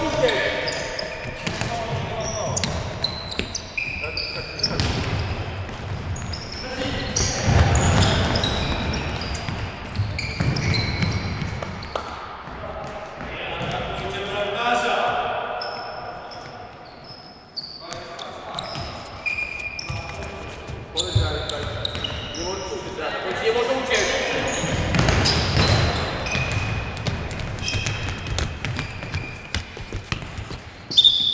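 Indoor futsal play in a sports hall: the ball being kicked and bouncing on the hard floor, with players calling out to each other, all echoing in the large hall.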